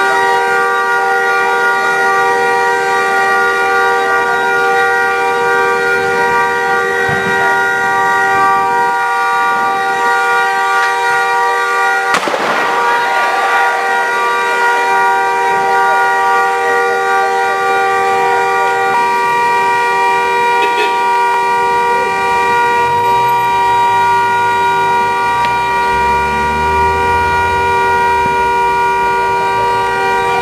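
A car horn stuck on, sounding one loud, unbroken multi-note tone, typical of a horn shorted out in a burning car. There is one sharp bang about twelve seconds in.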